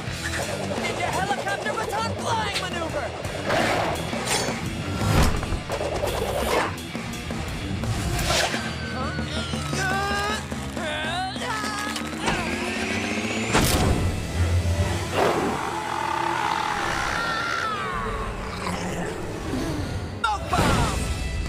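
Animated action-cartoon fight soundtrack: background music mixed with sound effects, with several sharp hits, the loudest about two-thirds of the way through, and wordless cries and grunts.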